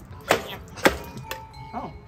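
A metal soup can being knocked twice, sharply, about a second apart, to shake its thick contents out into a pan.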